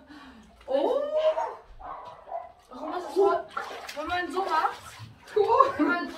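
Voices talking in short bursts, with water moving in an above-ground pool.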